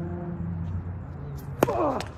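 A tennis ball struck sharply by a racket about one and a half seconds in, followed at once by a short squeal falling in pitch. A low steady hum fades out in the first second.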